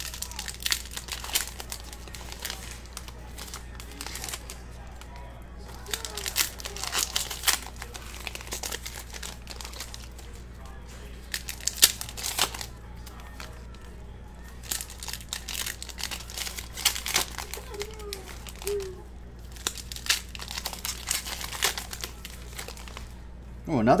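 Trading-card pack wrappers being torn open and crinkled by hand, in several bursts of crackling, as cards are slid out and handled.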